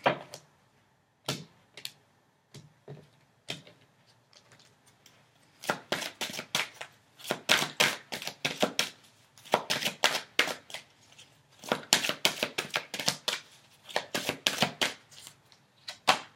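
A deck of oracle cards being shuffled by hand: a few lone taps, then from about six seconds in quick runs of papery card slaps and clicks, each run lasting about a second.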